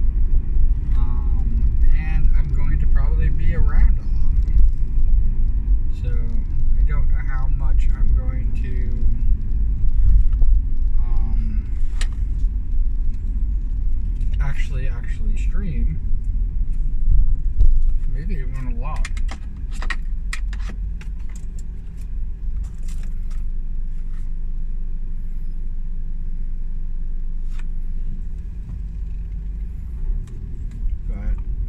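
Steady low road rumble inside a car's cabin while driving. A person talks at times in the first part, with scattered small clicks and rattles. The rumble drops somewhat in level after about twenty seconds.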